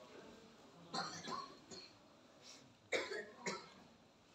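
A person coughing and clearing their throat: a few short coughs about a second in, then two more sharp ones near the three-second mark.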